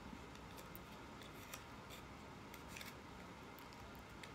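Quiet room tone with faint, irregular small clicks and taps, about a dozen scattered through it.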